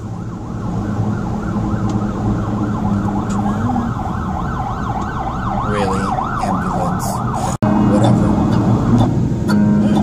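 Emergency vehicle siren in a fast rising-and-falling yelp, heard from inside a car. It cuts off abruptly about three-quarters of the way through.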